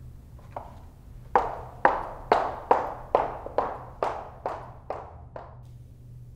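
A regular series of about ten sharp, echoing strikes at roughly two a second: faint at first, loudest in the second second, then steadily fading away.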